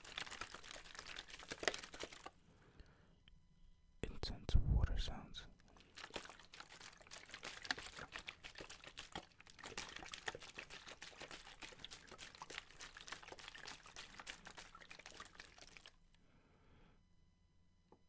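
Thin plastic water bottles squeezed and shaken close to the microphone: dense crinkling and crackling of the plastic, with water sloshing inside. It comes in two stretches, pausing about two seconds in and resuming with a low thud about four seconds in, and stops about two seconds before the end.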